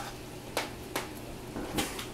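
Metal tongs clicking against a frying pan three times, about half a second in, at one second and near the end, over a steady faint hiss of the simmering pan sauce.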